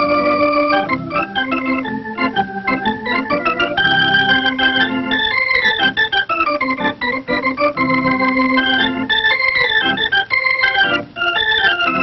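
Two-keyboard organ playing a lively melody over held chords, with quick downward runs of notes twice.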